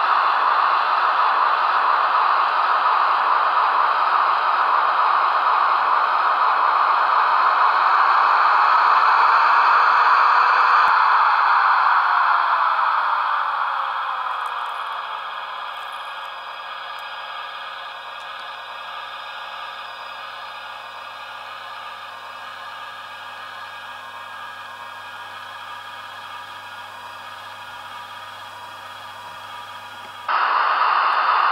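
The sound decoder of a Märklin/Trix HO-scale SBB Ae 6/6 electric locomotive model plays the locomotive's running sound through its small speaker: a loud, steady rush of blowers and electrics. About eleven seconds in, whines fall in pitch and the sound dies down over a few seconds to a quieter steady hum, as the locomotive sound winds down.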